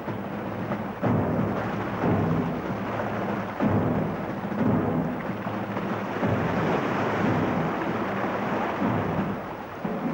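Rumbling roar of a storm-driven sea and surf under dramatic orchestral music with low sustained chords, swelling in irregular surges.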